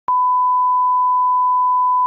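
Broadcast reference test tone, the steady beep that goes with TV colour bars: one unbroken pure tone that starts a moment in.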